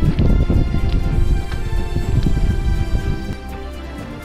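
Footsteps on the wooden planks of a boardwalk bridge, irregular knocks that stop about three seconds in, over steady background music.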